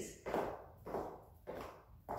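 Footsteps on a tile floor: four soft, evenly spaced steps, about one every half second or so.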